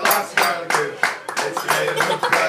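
A group clapping along in a steady rhythm, about three claps a second, while voices sing a birthday song.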